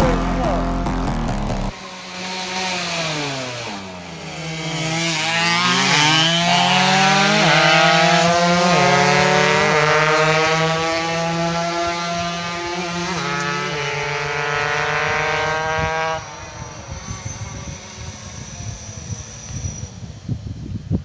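Race-tuned underbone motorcycle engine revving hard as it accelerates, its pitch climbing and dropping sharply at several gear changes, then cut off suddenly. Wind noise on the microphone follows.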